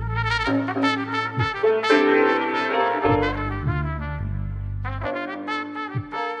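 Instrumental background music with a brass lead melody over a bass line, the notes changing every half second or so.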